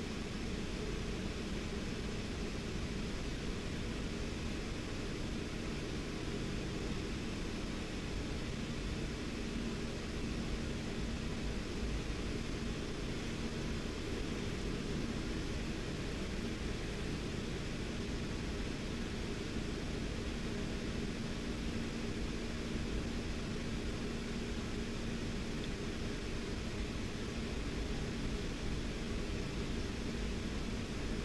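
Steady low hum and hiss of background noise, unchanging throughout, with no distinct events.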